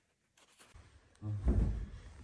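Scratchy rubbing and handling noise from a hand-held plastic milk-tea cup. It grows louder about a second in, with a low rumble near the middle.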